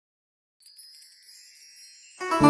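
Silence. A little over half a second in, a faint, high tinkling shimmer of many ringing tones begins: the opening of intro music.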